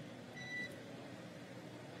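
A short electronic beep, one pitched tone lasting about a third of a second, about half a second in, over a faint steady hiss.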